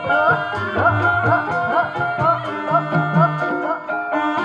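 Javanese gamelan music for a kuda kepang (ebeg) horse dance: hand-drum strokes that bend in pitch over ringing metallophone notes, keeping a steady beat.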